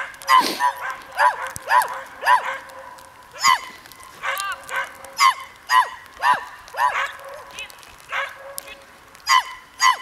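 A dog barking over and over in short, high-pitched barks, about one or two a second, with a pause of a second or so near the end.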